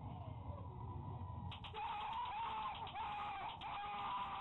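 A person screaming in high, wavering shrieks that start about one and a half seconds in and go on past the end, over a low background rumble. The recording is thin and cut off in the highs.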